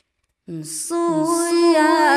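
A woman's voice singing a Red Dao (Dao đỏ) song in the Dao language. The singing starts about half a second in, after a silence, and the pitch wavers and bends through the held notes.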